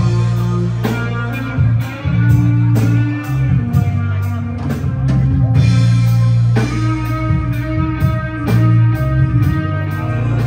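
Live rock band playing an instrumental passage: bass guitar holding low notes, guitar and a drum kit keeping a steady beat with regular cymbal strokes.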